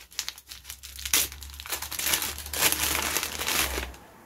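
A small advent-calendar package being unwrapped by hand: its wrapping crinkles and rustles in uneven handfuls, busiest in the second half.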